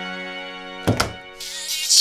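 A held synth chord fades out, then a door closes with a sharp thunk about a second in. Pop music comes back in near the end.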